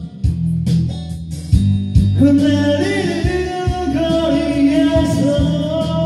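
Karaoke backing track with guitar, bass and a steady beat, and a man singing a Korean ballad over it, his voice coming in strongly about two seconds in and holding long notes.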